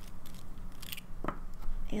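A few short, sharp clicks and taps from a fountain pen being handled and flicked to splatter ink spots onto a journal page.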